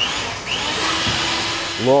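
Electric hand mixer running steadily, its beaters whirring through frosting in a plastic bowl, with a constant motor hum underneath.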